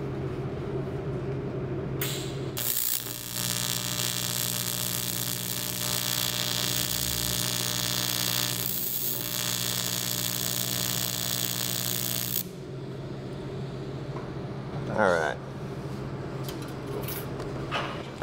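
TIG welder arc on aluminum, a tack weld: a steady electric buzz with hiss that starts about three seconds in, holds for about ten seconds and cuts off sharply when the arc is broken. A low steady hum runs under it and continues after.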